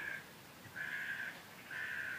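A bird calling outdoors, fairly faint: one call about half a second long roughly a second in, and a shorter one near the end.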